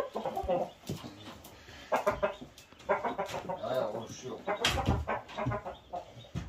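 A fighting rooster clucking in several short calls.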